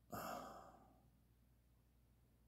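A man sighing once: a short, breathy exhale at the start that fades out within about a second.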